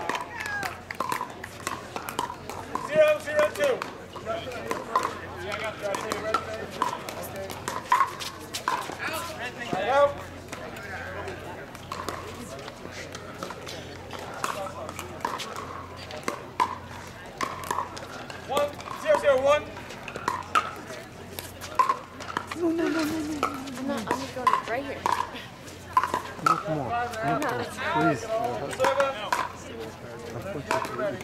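Pickleball paddles striking a hard plastic ball: sharp, hollow pocks at an irregular pace of about one a second, with voices talking in the background.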